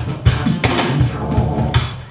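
Band music driven by a drum kit beat of bass drum, snare and cymbals, with a cymbal crash near the end.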